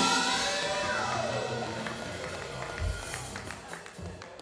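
Live band music dying away after a loud hit, with a gliding tone that falls in pitch partway through and the sound growing steadily quieter.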